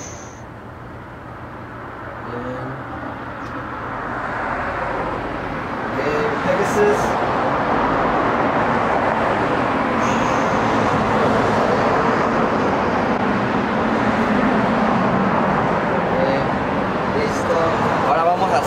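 Road traffic noise, swelling over the first few seconds and then holding steady.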